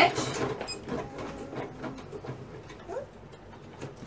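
Home sewing machine stitching with a twin needle, top-stitching a seam in knit fabric, with irregular light ticking.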